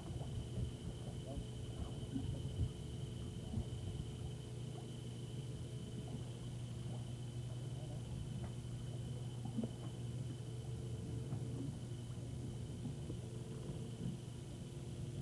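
Steady low hum with a thin, high-pitched whine running over it, typical of a home camcorder's sound track. Faint distant voices and a few light knocks come through now and then.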